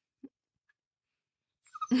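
Mostly quiet, then near the end a small dog's short vocal sound with a woman laughing.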